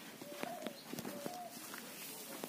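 A bird calling faintly, two short clear notes about a second apart, coo-like, with a few faint clicks.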